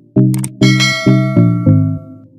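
A bell-chime sound effect rings out about half a second in, bright and fading over about a second and a half, just after a short click. It is the end-screen subscribe-and-notification-bell effect, over background music with a steady run of low notes.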